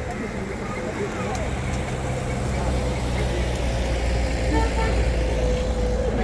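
A motor vehicle's engine running close by, a low steady hum that grows louder after about a second, with people talking around it.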